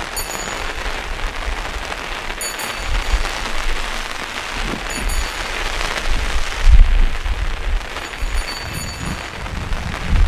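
A bright, small metallic jingle sounds four times, about every two and a half seconds, over a steady rushing hiss. It marks the elevation of the chalice at the consecration of the Mass.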